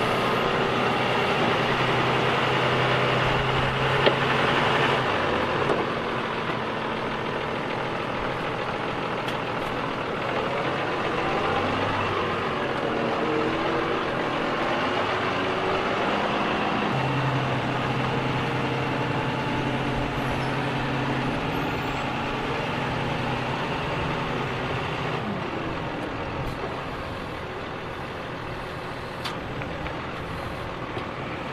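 New Holland tractor engine working its front loader, running steadily and pulling harder in two spells as it lifts and carries soil, over continuous machinery noise. A single sharp knock about four seconds in.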